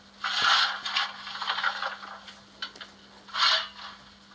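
Coal-shovelling sound from the sound decoder of a Märklin 39009 BR 01 model steam locomotive, played through its small on-board speaker: three scraping shovel strokes, two in the first two seconds and one near the end, over a faint steady hum.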